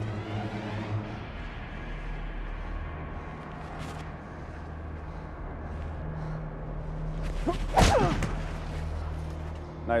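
A low, sustained drone of a dramatic TV underscore. About eight seconds in comes a sudden loud burst with a short vocal cry or grunt.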